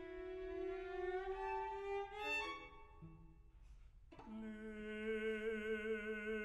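String quartet playing contemporary concert music: a held bowed note slides slowly upward, thins to a near-quiet pause about three seconds in, and then a new sustained chord with wide vibrato enters just after four seconds in.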